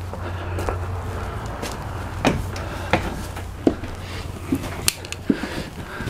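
Footsteps and a few irregular light knocks and clicks over a steady low rumble.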